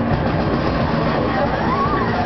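Live extreme free-jazz/power-violence band playing a dense, unbroken wall of loud noise with drums, with a short rising pitched wail cutting through near the end.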